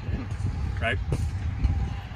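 Low, uneven rumble of wind buffeting the microphone outdoors, under a single spoken word.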